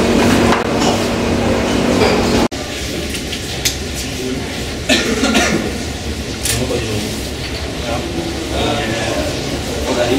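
Indistinct voices with no clear words over laboratory background noise. A steady hum in the opening seconds cuts off abruptly about two and a half seconds in.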